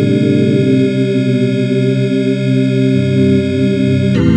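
Dungeon synth music: sustained, organ-like synthesizer chords held steady without a beat, with a low bass note coming in about three seconds in.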